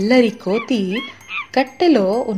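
A cartoon character's voice making a quick run of short wordless yelps and whines, about six in two seconds, each dipping and rising in pitch.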